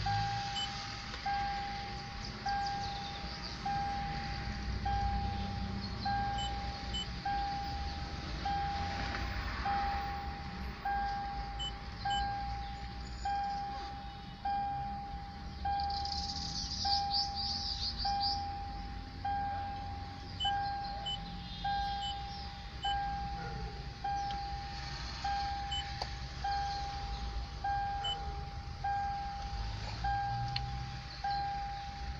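A Toyota's in-cabin warning chime dinging steadily about once a second, a single repeated tone of the kind the car sounds for an open door or a key left in. A brief rustling noise comes just past halfway.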